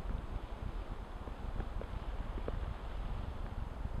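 Wind buffeting the microphone outdoors: an uneven low rumble with a faint hiss over it.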